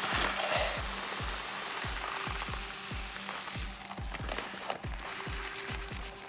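Dry rice grains poured from a plastic measuring cup into a stainless steel pot, a steady hiss of grains that is loudest at first and tails off. Background music with a steady beat plays throughout.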